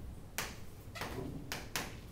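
Chalk writing on a chalkboard: four short strokes of the chalk against the board, the last two close together.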